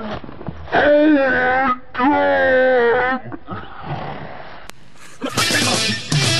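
A person's voice gives two long, drawn-out wailing cries, each about a second long, a moment apart. Near the end, loud heavy rock music comes in.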